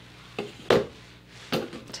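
A few short rustles and taps from hands handling synthetic hair fibres against a salon cape, the loudest just under a second in.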